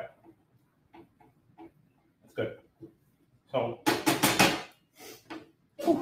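A metal utensil tapping and scraping in a skillet of sautéing broccoli rabe: a run of light clicks, then about four seconds in a louder burst of scraping and sizzling as the pan is worked on the gas burner, with a shorter burst near the end.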